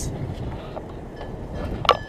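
Wind blowing on the microphone, a low, uneven rumble, with one short sharp sound just before the end.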